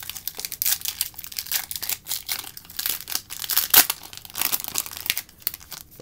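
A trading-card pack wrapper being torn open at its crimped top edge and crinkled in the hands: a dense, continuous crackling, loudest about two-thirds of the way through.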